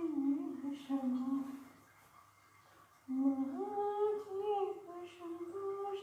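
A woman's voice singing a devotional Shiva bhajan, unaccompanied, in long held notes that glide between pitches. It comes in two phrases with a short pause about two seconds in.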